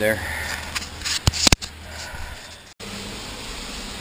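Handling noise from a hand-held camera being moved about, with two sharp clicks a little after a second in. The sound drops out for an instant just before three seconds in, then only a faint steady garage background remains.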